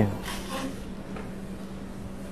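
Hushed hall ambience with a faint, steady low hum while a pool player is down on the shot, before the cue strikes the ball.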